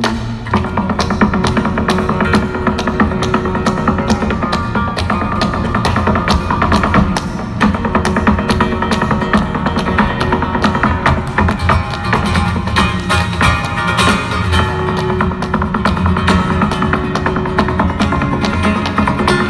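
Flamenco zapateado: the dancer's heeled shoes striking the stage in fast, dense rhythmic strikes over flamenco guitar accompaniment.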